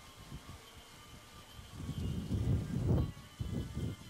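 Wind buffeting the camcorder microphone: a faint steady hiss, then an irregular, gusting low rumble that comes in about two seconds in and swells and drops.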